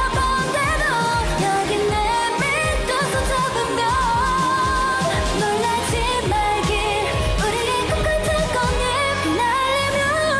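Live K-pop performance: female voices singing a melody with vibrato over a steady electronic dance beat and bass.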